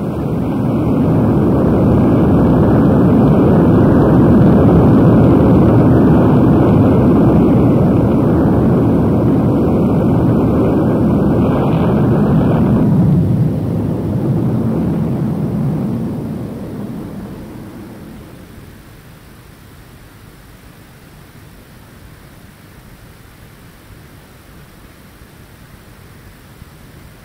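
Loud, steady rumbling roar, a dramatic sound effect for the end of the world, that starts suddenly, holds for about thirteen seconds, then fades out over the next few seconds, leaving faint tape hiss.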